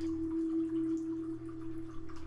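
Soft meditation background music: a single pure, held tone that swells slightly in the first half-second and then eases off, over a steady low drone.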